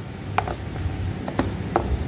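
Spatula folding whipped egg whites into chocolate batter in a glass bowl: soft scraping with three light clicks of the spatula against the glass.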